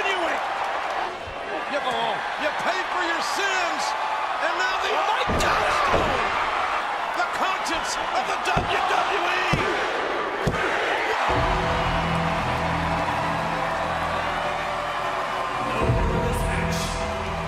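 Dubbed wrestling-match audio: a background of crowd voices, with several sharp slams landing between about five and ten seconds in, then music coming in at about eleven seconds.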